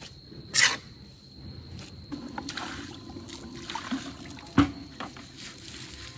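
Wet scraping and squishing of freshly ground chive-flower paste being scooped with a spatula and brushed across stone, with a sharp scrape about half a second in and a knock about four and a half seconds in.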